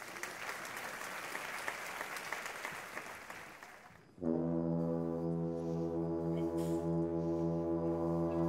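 Audience applause fading out over about four seconds. Then a live wind band's brass comes in suddenly with a held low chord, and higher notes join near the end.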